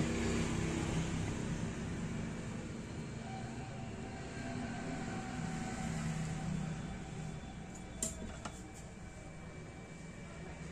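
Steady low background hum, with a single faint click about eight seconds in.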